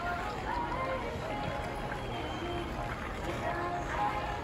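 Outdoor ice rink ambience: many skaters' voices chattering and calling out at a distance, none of it clear speech, over a steady low background noise.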